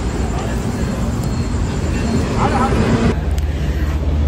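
Steady low rumble of road vehicle noise with faint voices in it. About three seconds in the sound changes abruptly and the low hum becomes stronger.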